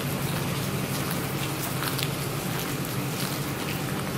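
Steady light rain pattering, with scattered small drop ticks over a low steady hum.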